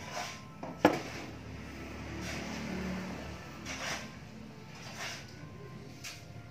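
A single sharp knock about a second in, then soft handling and rubbing noises as the brazed metal airgun tube is turned over in the hands on a workbench.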